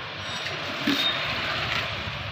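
Steady outdoor background noise: a low, even rumble like street traffic, with no speech.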